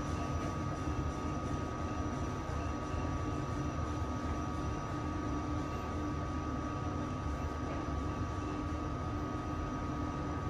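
KONE 3000 MonoSpace machine-room-less lift car travelling down at full speed, heard from inside the car: a steady ride rumble with a constant high whine running through it.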